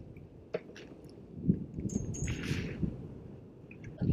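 Close handling noise as a small fish is lifted on the line and taken in hand: rustling and a few light clicks and knocks over a low rumble.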